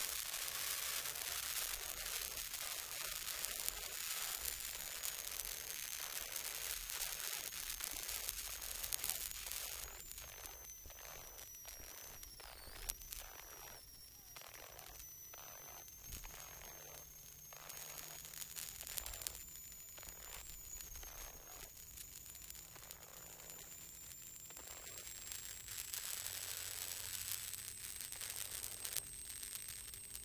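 Rally car intercom feed with the voices gone: steady hiss and crackle with a thin high whine that wanders up and down in pitch. The noise dips quieter through the middle and the car's engine is barely heard. This is the sign of the intercom losing its connection.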